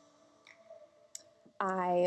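The last of the background music fades into near quiet, with a couple of faint clicks about half a second and just over a second in. A woman starts speaking near the end.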